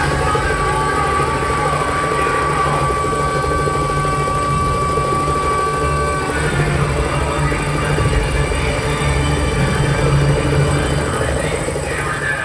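Helicopter sound effect played loud over a theatre's speakers: a low rotor beat, with a steady high tone held for the first six seconds or so.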